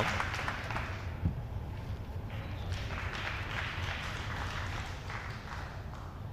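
Light audience applause after a scored point, slowly fading, with a single dull thump about a second in.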